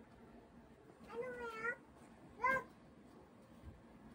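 Two short high-pitched cries over low room noise. A longer one comes about a second in, and a brief, louder one follows about a second later.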